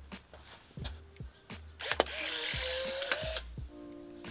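Polaroid SX-70 Land Camera firing: a few light clicks, then the shutter snaps about two seconds in, and the film-ejection motor whirs for about a second and a half as it pushes out the print, stopping abruptly.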